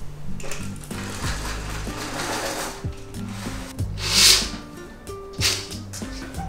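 Background music, with the rustle of a roller blind and curtains being opened over it. The loudest moment is a sharp swish about four seconds in, and a shorter one follows near the end.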